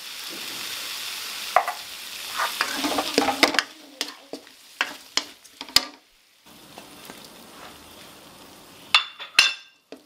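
Chicken feet and pickled bamboo shoots sizzling as they are stir-fried in a metal wok, with a wooden spatula knocking and scraping against the pan. The sizzle is loudest in the first few seconds, then drops to a quieter hiss broken by scattered spatula knocks, with a brief cut-out about two-thirds through.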